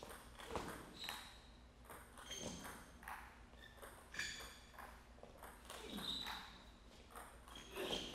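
A long table tennis rally heard faintly: a celluloid-bright ping of the ball struck by rubber paddles and bouncing on the table, with irregular hits every half second to a second.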